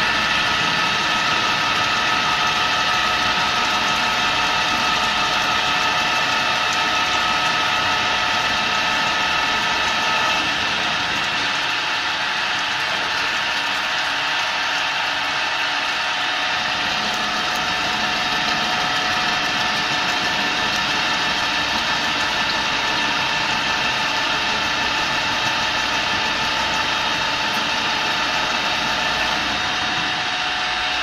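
CNC end mill slot-milling a large metal ring under automatic program control: a steady machining whine made of several held tones over a noise of cutting. A little after ten seconds some of the tones drop away and the sound thins slightly.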